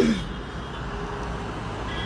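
Steady low rumble of a car running, heard from inside the cabin, with a faint steady hum.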